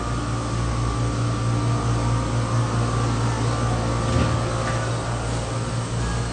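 A steady machine hum: a strong low drone with faint higher whining tones, holding level with no breaks.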